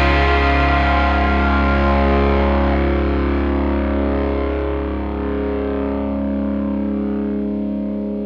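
Rock song ending on a held, distorted electric guitar chord over a steady bass note, ringing out as its treble slowly dies away.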